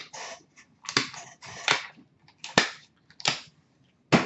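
Handling of trading cards and their plastic holders and packaging: four sharp plastic clicks or snaps, with rustling between them.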